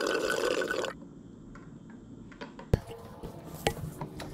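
Water being sucked through the straw spout of a plastic water bottle: a loud, even sucking noise that stops abruptly about a second in. A single sharp click follows later, then faint scattered ticks.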